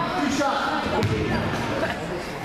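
A basketball bouncing on a hardwood gym floor, with one sharp knock about halfway through, over people talking.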